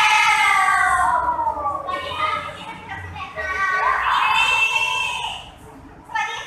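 Young women's voices talking and calling out through stage microphones and speakers, opening with a long drawn-out call that falls in pitch.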